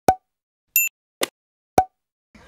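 Edited-in sound effects: short, sharp pops cut between stretches of dead silence, three of them, with a brief high electronic beep a little under a second in.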